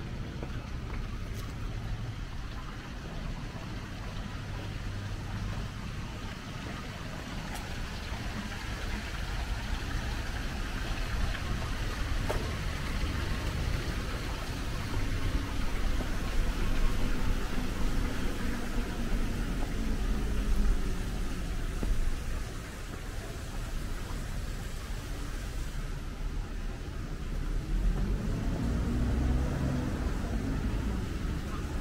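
City road traffic rumble with vehicle engines passing; near the end an engine's pitch rises and falls as a vehicle goes by.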